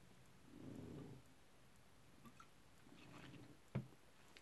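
Near silence with faint mouth sounds of a man drinking from a glass bottle, a soft swallow about half a second in, then a short knock near the end as the bottle is set down.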